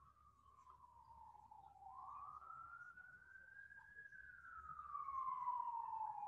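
Faint emergency-vehicle siren on a slow wail: one tone falling, rising to a peak about four seconds in, then falling again.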